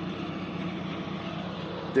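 Wheel loader's engine idling steadily in the background.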